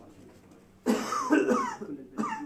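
A person coughing loudly: a sudden cough about a second in that runs on for about a second.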